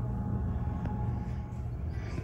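A steady low hum with no clear rises or breaks, the background drone of the room.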